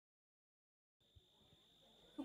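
Near silence: a second of dead silence, then faint hiss.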